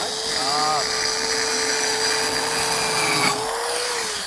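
Rotorazer Platinum compact circular saw running at a steady high whine while cutting a curve through a rug, its blade set to a very shallow depth. The pitch rises slightly near the end.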